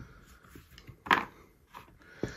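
Faint clicks of small plastic dice being handled and gathered from a felt dice tray, with one short, louder burst of noise about a second in.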